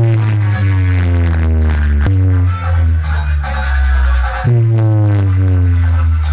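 Heavy-bass electronic DJ track played at high volume through a stacked DJ speaker tower, with a deep sustained bass and falling pitch sweeps that restart every two seconds or so.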